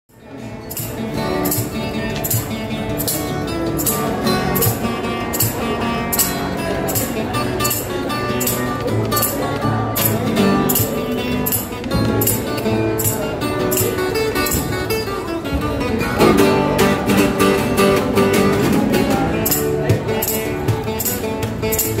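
Solo acoustic guitar played fingerstyle, picked melody and bass notes over a steady beat of sharp percussive hits about twice a second.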